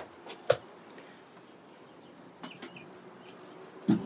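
Footsteps climbing teak boat steps: a few separate knocks and taps, the loudest about half a second in and another just before the end, over a faint steady hum.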